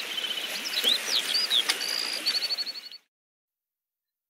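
Small birds chirping in short sweeping calls, with a rapid trill about two seconds in, over a steady rush of flowing water. All of it cuts off suddenly about three seconds in.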